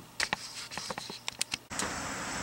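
A run of small, irregular clicks and taps, like handling noise, then an abrupt cut near the end to a steady background hiss.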